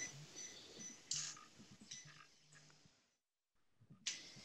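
Near silence: faint room tone, with one brief faint sound about a second in.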